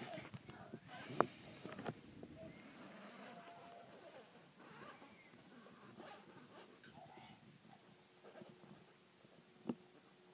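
Faint whirring of a BB-8 toy robot driving over carpet, with short droid-like chirps and tones. A couple of sharp knocks come about a second in and near the end.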